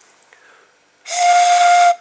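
A single pan-pipe note from a cut-down plastic drinking straw, blown across its open top while a finger seals the bottom end so the air column inside resonates. It is one steady, breathy note that starts about halfway in and lasts about a second.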